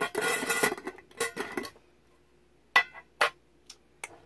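A jar full of jewelry being opened and handled: a rattling scrape at the start and a shorter one about a second in, then two sharp clinks about half a second apart near the end.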